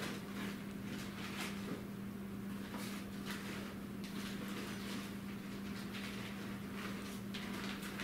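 Faint scattered clicks and rustles of a cardboard box of parts being rummaged through, over a steady low hum.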